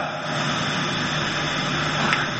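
Steady background hiss with a faint low hum, holding even throughout, with no speech.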